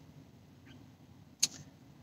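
Near silence: the quiet room tone of a car cabin, broken by one short, sharp click about a second and a half in.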